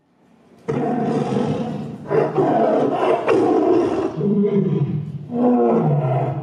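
Recorded animal roars, like a big cat's, played as a sound effect in a stage play. They come in suddenly and loudly about a second in, in several long surges.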